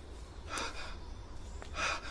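A man's gasping breaths, two of them, about half a second in and near the end, over a low steady rumble.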